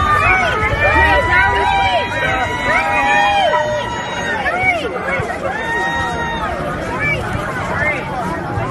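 A tightly packed crowd of fans, many of them kids, calling out over one another at close range, many voices rising and falling at once over the arena's background rumble.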